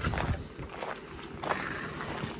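Footsteps on a dirt track, a few irregular steps, over the steady low hum of a vehicle engine left idling.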